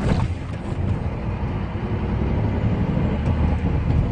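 Heavy truck engine running with low road rumble, heard from inside the cab as the truck drives slowly along a town street.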